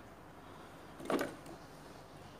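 A handful of long red hot peppers dropped into a plastic food-processor bowl, landing with one short clatter about a second in.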